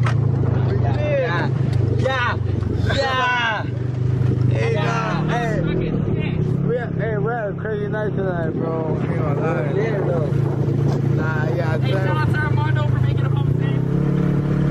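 Engine of an off-road side-by-side UTV running steadily as it drives, its pitch rising a little now and then, with riders' voices shouting over it.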